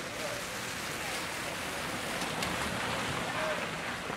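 Steady outdoor background noise with faint, indistinct voices in the distance and a few faint clicks.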